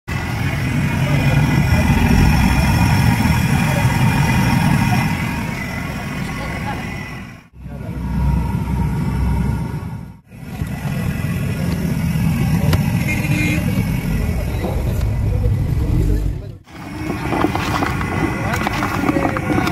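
Busy street ambience: people talking and traffic noise, heaviest in the low rumble. It comes in several clips joined with abrupt cuts.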